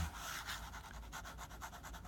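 Fountain pen nib scratching across paper in many short, quick scribbling strokes.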